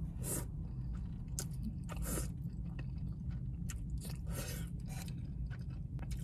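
A person chewing a mouthful of thick, chewy fresh-cut noodles in sauce, with soft mouth clicks scattered through it, over a low steady hum.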